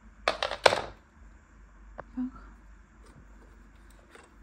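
Short crinkling and clicking of a clear plastic bag and small plastic robot-vacuum parts being handled, loudest about half a second in, with a single sharp click about two seconds in.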